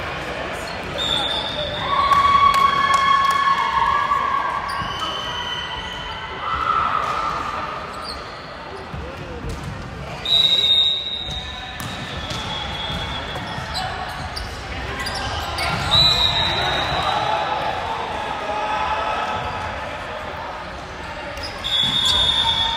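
Volleyball game sounds echoing in a large sports hall: rubber-soled sneakers squeaking on the hardwood court in short high squeals, the ball being hit and bouncing, and players' voices calling out.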